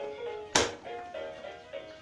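Electronic melody playing from a toddler's musical activity table, thin single notes in a simple tune. One sharp knock about half a second in, as a hand strikes the toy.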